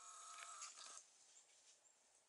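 A faint call from a wild turkey, one pitched call lasting about a second that stops about a second in.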